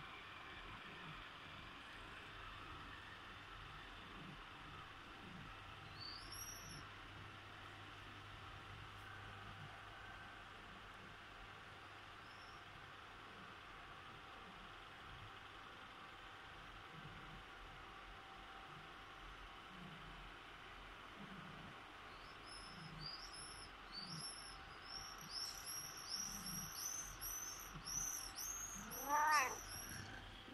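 Persian cat giving one rising meow near the end, calling for its absent owner. Before it, a quick run of faint high-pitched chirps.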